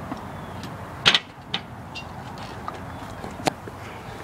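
A person gagging and retching after drinking a foul mixed drink: a few short, sharp heaves, the loudest a close pair about a second in.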